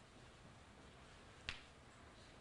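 Near silence: room tone, broken by one short, sharp click about one and a half seconds in.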